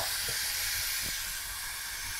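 A steady hiss, with two faint clicks, one about a third of a second in and one about a second in.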